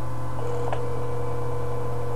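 Steady electrical mains hum with a faint, steady higher tone over it and a single click about three-quarters of a second in.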